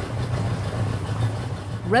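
A small boat's engine running with a steady low hum under a hiss of noise, cutting in suddenly at the start.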